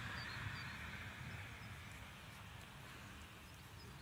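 Faint scratching and rustling of fingertips rubbing dry soil off a small corroded coin, over a low, uneven rumble.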